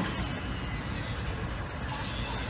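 Steady low rumble of a running engine, with a sharp knock right at the start.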